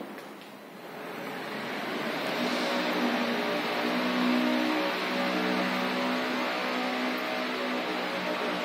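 Engine noise that builds up over the first couple of seconds and then holds steady, with a low droning hum.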